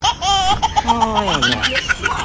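High-pitched human laughter and cries: a fast wavering squeal just after the start, then several voices sliding down in pitch about a second in.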